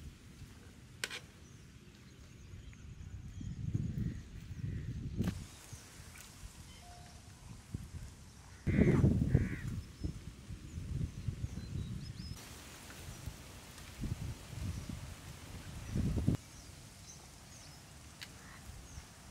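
Outdoor rural ambience: uneven low rumbling bursts, the loudest about nine seconds in, with faint short bird chirps.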